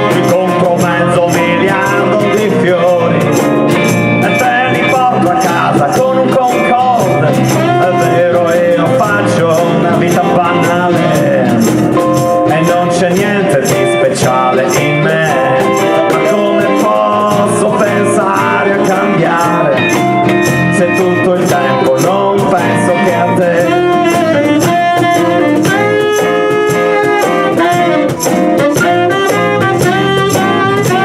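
A small acoustic band plays an instrumental passage live: guitars and bass under a saxophone, with a shaker keeping a steady rhythm.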